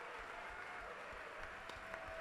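Faint audience applause and crowd noise in a large hall.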